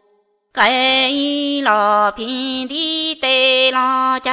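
A solo voice singing a slow, chant-like song in long held notes. It starts about half a second in, after a brief silence.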